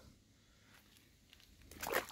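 Faint background, then near the end a short rush of splashing as a large fish is lowered back into the pond water and released.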